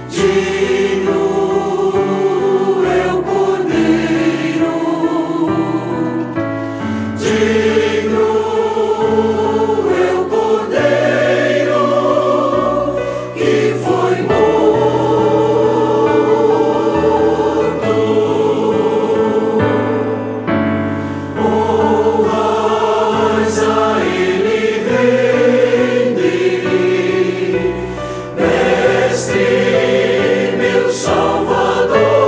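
A choir singing a Portuguese-language worship hymn in long held chords, with piano accompaniment.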